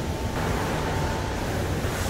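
Steady room noise of a large food-factory cooking room: ventilation and machinery running, with a constant low rumble and a faint steady high tone that stops a little past halfway.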